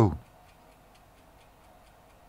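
A man's voice ending a word, then a pause holding only a faint, regular ticking.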